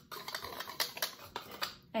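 An irregular run of light clicks and taps as a wire whisk and a plastic funnel are handled against a glass mixing bowl.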